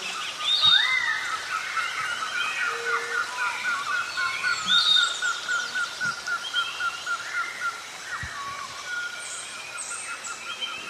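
A chorus of birds singing and calling, used as the opening soundscape of a song. One bird chirps rapidly, about four times a second, until near the end, with other birds' whistled, gliding calls over it.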